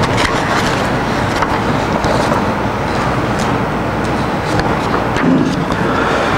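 Sheets of paper being handled and shuffled close to a podium microphone, with scattered crackles over a steady background rumble.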